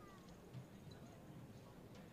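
Near silence: faint open-air ambience, with a brief faint falling chirp right at the start.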